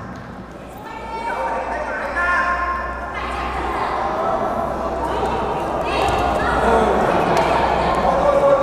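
Several voices shouting drawn-out calls that echo in a large hall, over a steady low hum.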